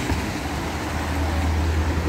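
Road traffic on a wet town street: a steady low engine rumble with a haze of tyre noise, swelling slightly toward the end.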